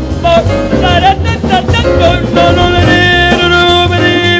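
A woman singing jazz live with a band, drum kit behind her. She sings short phrases that bend in pitch, then holds one long note from about halfway through.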